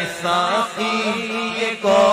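A man's solo voice singing an Urdu naat, a devotional poem, with long ornamented held notes over a steady low drone. The voice breaks off briefly near the end and comes back louder.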